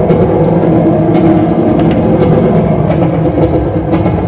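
Live electric guitars playing a loud, dense, sustained low drone.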